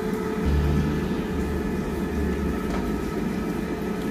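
A steady mechanical hum with a constant low tone, joined by a deeper rumble from about half a second in until about two and a half seconds in.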